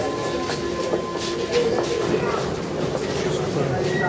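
A Métro train running in the station, a steady whine that stops about two and a half seconds in, over a crowd's footsteps and voices.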